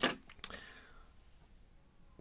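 Two short clicks of the metal key being handled after cycling it in the pin-tumbler mortise cylinder, the first louder, the second about half a second later.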